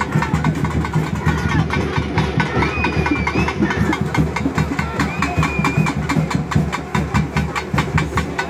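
Fast, steady drumming of many quick beats, with crowd voices and a few brief high wavering whistle-like tones near the middle.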